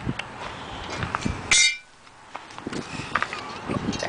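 Steel riding-mower cutting blades knocking and clinking as they are handled and picked up off gravel, with one short, high metallic clang about one and a half seconds in.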